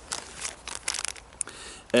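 Plastic heat-pad packets crinkling and rustling as they are handled, in a few irregular scratchy bursts.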